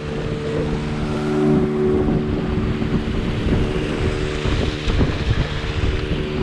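Outboard motor of a small river boat running steadily at cruising speed, its drone holding an even pitch, over the rush of water along the hull and wind on the microphone.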